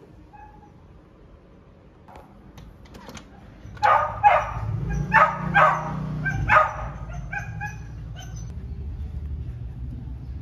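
A dog barking, about five sharp barks in quick succession around the middle, followed by a few fainter yips over a low steady rumble.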